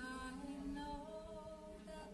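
Slow worship music from a small church band: voices hold long notes that move slowly from one pitch to the next over soft instrumental backing.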